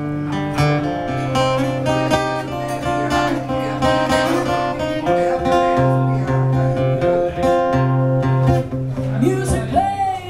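Acoustic guitar strummed in a steady rhythm, playing an instrumental passage of sustained chords between sung verses.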